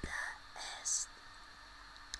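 A man whispering close to the microphone for about a second, ending on a hissing consonant, then only faint room hiss.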